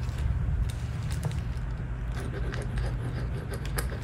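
Gel pen writing on a sticky note: a run of light scratchy ticks from the pen strokes and paper handling over a steady low hum.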